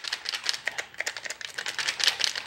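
A DeWalt jigsaw being shaken by hand, giving a quick, irregular clatter of small clicks and rattles, with no motor running. The shaking is meant to jolt its worn carbon brushes back into contact with the armature so it will start.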